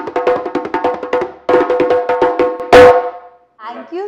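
Djembe played by hand in a fast run of strokes, each hit ringing from the goatskin head, with a brief break about one and a half seconds in and a loud closing stroke that rings out near the end.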